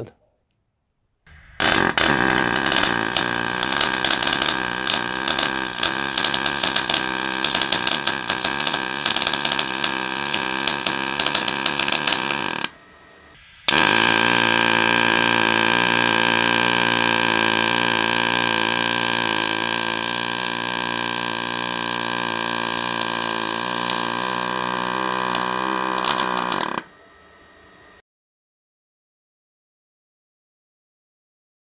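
MIG welding arc on stainless steel in two runs separated by a brief pause. The first run is a dense, uneven crackle. The second, welded with Arc Adjust (the machine's electronic choke) set, is a steadier buzz with a pitched hum in it. It stops about a second before the end.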